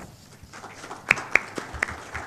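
Light, scattered applause from an audience, with a few sharp, louder claps standing out about a second in.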